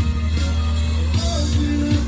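A live rock band playing: electric bass, electric and acoustic guitars and a drum kit with cymbals.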